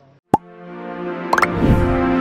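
Broadcaster's closing jingle: a sharp hit about a third of a second in, then a sustained synthesized chord that swells, with a short rising sparkle and a low rumble near the end.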